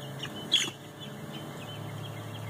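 Young crested chickens calling: one short, sharp, high squawk about half a second in, with faint scattered peeps, over a steady low hum.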